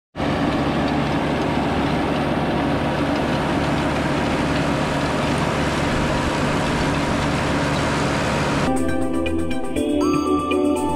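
New Holland TL100 tractor's diesel engine running steadily while pulling a rear-mounted rotary tiller through the soil. Near the end the sound gives way to music.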